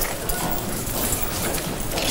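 Footsteps of several people walking on a hard floor: a quick, irregular run of knocks over the murmur of a room.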